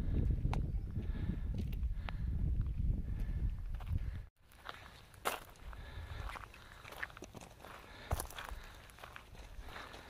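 Wind rumbling on the microphone for about four seconds, then a sudden break, then footsteps on a gravel trail, heard as scattered crunches.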